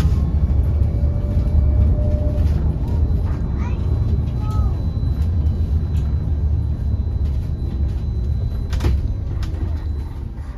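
Cabin noise of a Wright StreetDeck Electroliner battery-electric double-decker bus on the move: a steady low rumble from the road and running gear, with a faint thin high tone over it. A single sharp knock about nine seconds in.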